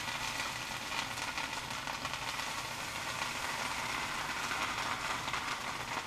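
Margarine-spread bread sizzling steadily in a hot cast-iron sandwich maker, with faint crackles, as the fat melts onto the iron.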